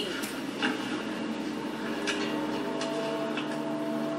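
Quiet, held tones of a suspense score from a TV episode playing through the computer speakers, with a few faint clicks.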